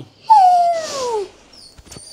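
A pet animal's single drawn-out call, starting about a quarter second in and falling steadily in pitch over about a second. Two faint short high tones follow near the end.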